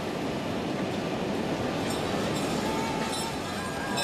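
Steady trackside ambience from a biathlon course microphone: an even noisy hiss with no distinct events.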